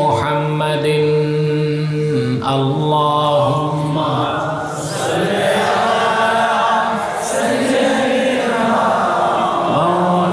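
A man's solo voice chanting an Arabic devotional poem in praise of the Prophet Muhammad through a microphone, drawing the words out into long, wavering held notes.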